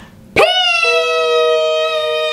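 Two voices yelling one long, steady note together. The first starts sharply about a third of a second in, and the second, slightly lower, joins about half a second later; both are held without a break.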